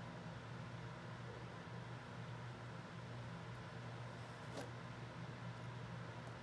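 Quiet room tone with a steady low hum, and one brief soft scrape about four and a half seconds in: a palette knife drawn through thick oil paint on a hardboard panel.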